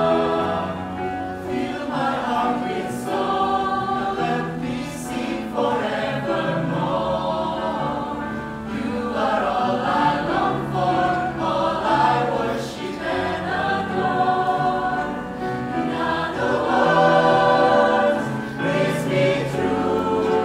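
A mixed choir of men's and women's voices singing in parts, with sustained notes that shift every second or so and no pause.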